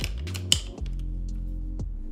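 A camera rig being set onto a tripod head: sharp clicks and knocks of the mounting hardware, the loudest about half a second in and another near the end, over background music with steady low held notes.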